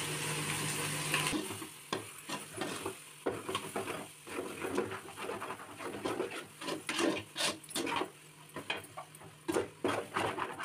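A metal spatula stirs and scrapes thick tomato masala in an aluminium pot, in irregular strokes with light clicks against the metal. A steady hum is heard for about the first second and cuts off suddenly.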